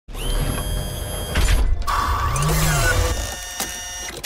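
Channel logo intro sting: synthesised mechanical whirring and whooshing sound effects over sustained electronic tones, with a short break about one and a half seconds in, followed by sweeping pitch glides.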